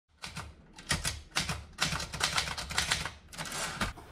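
A rapid, irregular run of clicks and taps, sparse at first and then coming thick and fast.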